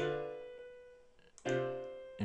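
Two sampled rock-piano chords from a VST software instrument, the first at the start and the second about one and a half seconds in, each struck once and left to fade.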